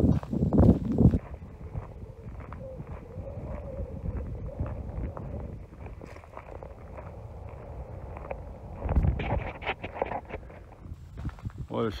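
Footsteps through grass and gravel, irregular and light, with a louder run of steps about nine seconds in, over a low outdoor background.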